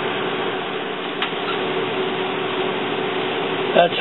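Steady background hiss with a constant low hum and one faint click about a second in.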